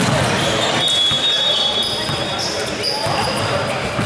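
Basketball game in an echoing gym: voices in the hall, a ball bouncing on the hardwood court, and brief high squeaks of sneakers on the floor about a second in and again near the end.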